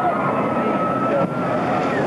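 Riders and onlookers screaming and shouting as a boat-load of passengers runs down a shoot-the-chute water ride, over a steady rushing noise. The long, wavering cries overlap throughout.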